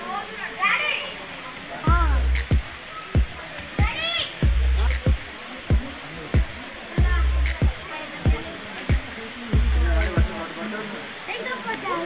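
Percussion music: sharp drum strokes about twice a second with a deep bass hit every two and a half seconds, starting about two seconds in and stopping shortly before the end. Crowd voices and the rush of falling water run underneath.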